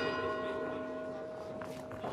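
Ring bell struck once, its ringing slowly fading: the bell for the start of round two.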